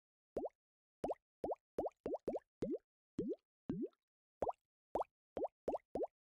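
Bubble-pop sound effect from Steinberg's Materials: Wood & Water sample library, played note by note: about fourteen short pops, each a quick upward blip. It is one popping sound pitch-shifted across the keyboard, dipping lower in the middle and going higher again near the end.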